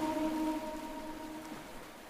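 The echo of a Quran reciter's voice dying away after a held note, fading to a faint hiss.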